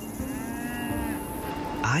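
A cow mooing: one long call that rises and then falls in pitch, lasting about a second and a half.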